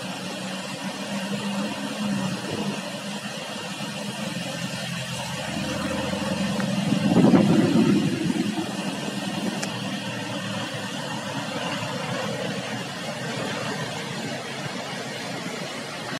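Rushing white water of a fast river churning through a weir, heard as a steady rush. Under it runs a steady low engine hum that swells to its loudest about seven seconds in, then fades.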